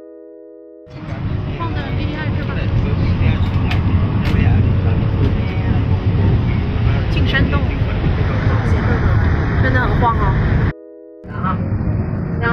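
A few soft mallet-keyboard music notes, then, about a second in, the loud, steady rumble of an Alishan Forest Railway train running, heard inside the passenger carriage. The rumble breaks off for half a second of music near the end, then resumes.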